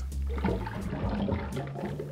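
Vodka poured from a steel jigger into a pint glass of citrus juice: a steady trickle of liquid running into the juice.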